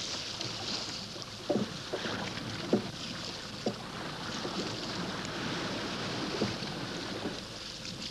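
Small waves washing on a pebble shore with a steady hiss, and four dull knocks scattered through, the loudest nearly three seconds in.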